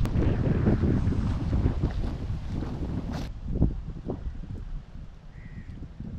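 Wind buffeting the microphone: a gusty low rumble that eases off in the last second or so, with one short click about three seconds in.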